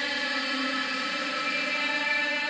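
Electronic dance track intro: a sustained synth chord held steady under a whirring, whooshing texture, with no vocals yet.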